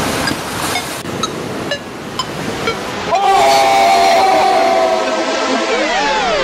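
Edited sound-design transition: a hiss with short high blips about twice a second, then a held synthesized chord from about halfway, ending in a tone that sweeps upward.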